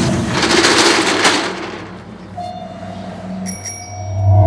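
A metal roll-up shutter rattling as it is pushed open, loud at first and fading within about two seconds. A faint steady tone and a brief high ring follow near the end.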